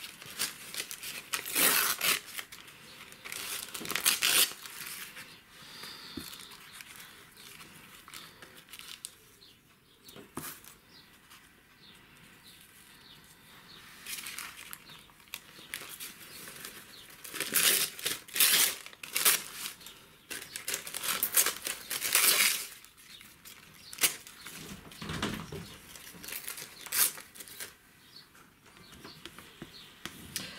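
Sheets of painted paper and tissue paper rustling and crinkling in irregular bursts as they are handled and pressed down onto a glued board.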